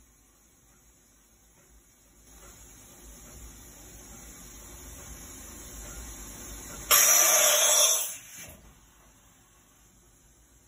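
Daewoo DMV 4020 CNC vertical machining center running an automatic tool change to a drill chuck: a low mechanical hum builds steadily for several seconds, then a sudden loud hissing rush lasts about a second and fades away.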